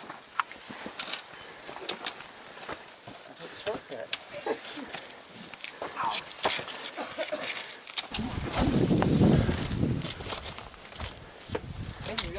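Scuffs, clicks and scrapes of several hikers' boots and gear on granite boulders as they scramble up a rocky slope. About eight seconds in, a low rumble swells for a couple of seconds.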